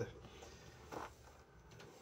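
Faint room tone in a pause between spoken sentences, with a soft brief sound about a second in; the accordion is not being played.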